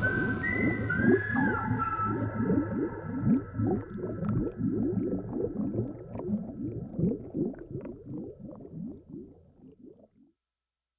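Underwater-style sound effects closing out a song: a fast, even run of short gurgling pitch sweeps like rising bubbles, with a few high, whale-like gliding calls in the first two seconds, all fading away by the end.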